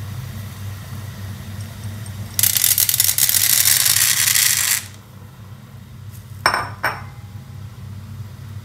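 Dry tapioca pearls poured from a bowl into a pot of boiling water: a loud rush of many small pellets rattling and pattering, lasting about two seconds from a couple of seconds in. Two short clinks follow later, over a steady low hum.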